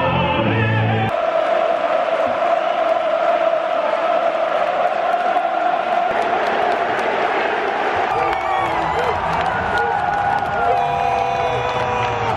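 Choral anthem music cuts off about a second in, giving way to a packed football stadium crowd cheering and chanting, with single voices shouting out near the end.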